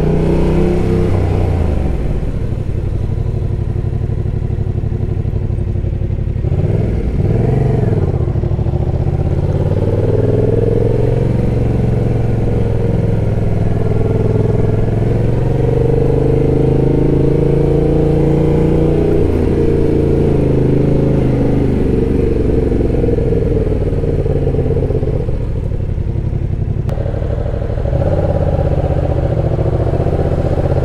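2019 Yamaha MT-07's parallel-twin engine running through a drilled-out exhaust at low speed in traffic, its pitch rising and falling as the throttle is opened and closed. Near the end it drops back briefly, then picks up again.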